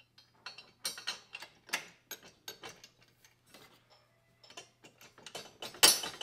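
Irregular small clicks, taps and clinks of needle-nose pliers and mounting hardware (washers, spacers and a bolt) being worked into a motorcycle crash-guard bracket, with a louder clink just before the end.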